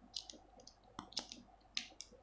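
A handful of faint, light clicks of small metal parts and a screwdriver inside a Kenzi Ferrari spinning reel's body as its oscillating gear is being taken out.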